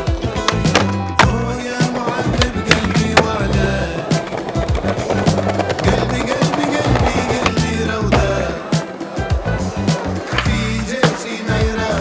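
Skateboard tricks on concrete: wheels rolling, with many sharp clacks of the board popping and landing scattered throughout, over background music with a heavy bass line.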